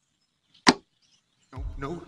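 Silence broken by one quick swish sound effect about two-thirds of a second in, as the title card changes; music with a deep bass starts in the last half second.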